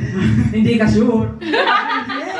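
A person talking, with chuckling laughter.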